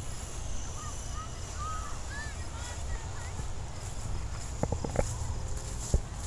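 Wind rumbling on the microphone, with a run of short bird chirps in the first half and a few sharp clicks about five seconds in.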